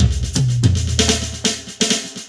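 Drum kit fill on acoustic drums converted to electronic drums with internal triggers: rapid snare and tom strokes, each tom note dropping in pitch, over bass drum and cymbal wash, played as sounds from the kit's drum module.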